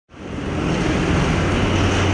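Steady outdoor street noise with a low, even rumble.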